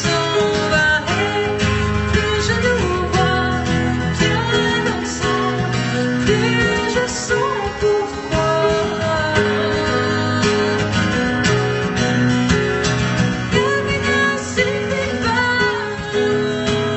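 A woman singing in French into a microphone while strumming an acoustic guitar, a live solo vocal-and-guitar performance.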